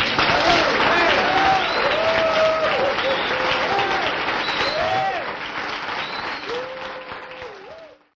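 Audience applauding loudly, with voices calling out and cheering over the clapping. It dies away over the last two seconds and cuts off at the end of the cassette recording.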